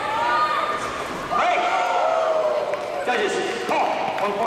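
Loud shouting voices with long held yells, and a few thuds, during a sparring exchange.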